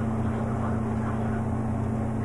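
A steady low hum with faint hiss: unchanging background room noise with no distinct events.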